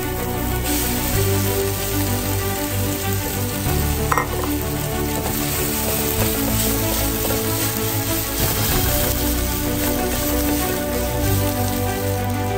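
Thawed chopped spinach and green onions sizzling in an oiled skillet while a slotted spatula stirs them.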